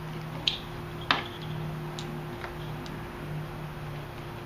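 Plastic wiring connectors on the back of a headlight assembly being handled and unplugged by hand: a few sharp clicks and small ticks, the loudest about a second in, over a steady low hum.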